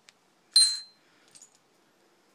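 A small metal ring clinks once against a hard surface, a sharp tap with a brief high ringing that dies away quickly, followed by a few faint light clicks.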